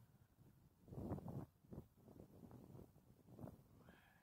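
Near silence: faint low background noise, with a brief soft swell about a second in.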